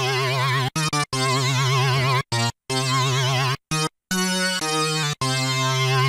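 Korg minilogue xd analogue polysynth playing a lead patch. Its triangle LFO is turned up to a fast rate on pitch, so the notes wobble in a quick vibrato. The notes are held and re-struck several times with short gaps between them.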